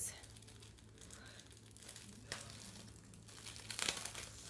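Faint crinkling and rustling of packaging as a folded fabric storage bin is handled and opened, with a few brief, sharper crinkles about two seconds in and near the end.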